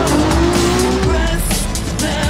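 A drift car's engine revving in a rising note that holds for about a second, with tyres squealing, mixed over loud background music.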